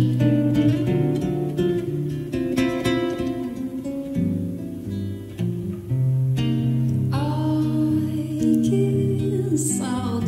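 Nylon-string classical guitar played fingerstyle, plucked melody notes over bass and chords. About seven seconds in, a woman's voice comes in singing over the guitar.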